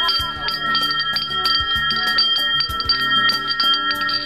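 Metal hand bell rung rapidly and continuously, its strikes coming several times a second over a steady ringing.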